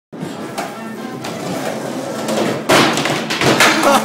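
Skateboard hitting a concrete floor: one loud slam about two and a half seconds in, then a few more knocks of the board. Music plays underneath throughout.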